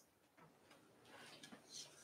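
Near silence: room tone in a pause between sentences.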